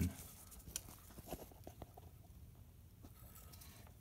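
Faint, scattered small clicks and light scrapes of hand tools being handled: a thin seal puller and a screwdriver being worked in against a camshaft oil seal.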